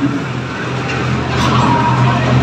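Chalk scraping on a blackboard as a line of symbols is written, with a short squeak in the second half, over a steady low hum.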